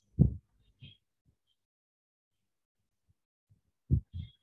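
A few brief low thumps: a pair near the start, a softer one about a second in, and another pair at the end, with near silence between.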